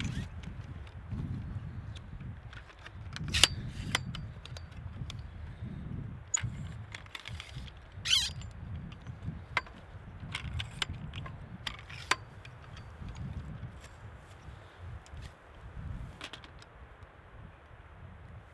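A tripod being unstrapped from a camera backpack and set up: scattered clicks and clacks of its leg locks and fittings, with a sharp snap about three and a half seconds in, over low wind rumble on the microphone.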